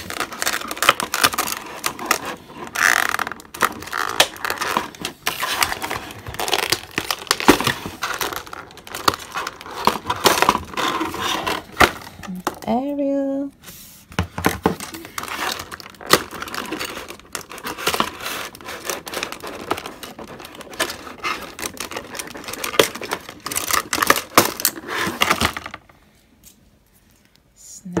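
Clear plastic packaging tray crinkling and crackling, with many small clicks and snaps, as plastic figures are worked loose and pulled out of it. The handling stops a couple of seconds before the end.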